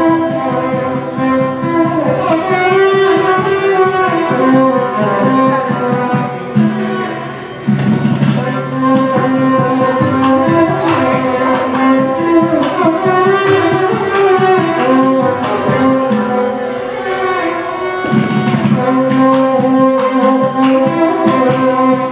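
Carnatic classical ensemble playing: a violin carries the melody over a steady drone, with hand-drum strokes throughout.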